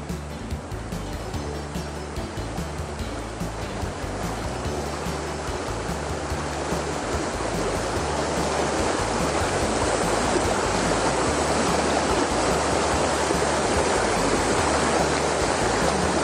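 Shallow river water rushing over stones in a riffle, a steady rush that grows gradually louder over the first half and then holds.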